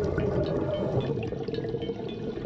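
Muffled underwater ambience heard through a camera housing: a steady low wash of water with faint bubbling from scuba divers' regulators.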